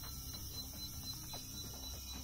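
Faint background of low, steady tones that shift in pitch now and then, with a thin high whine held throughout; no distinct event.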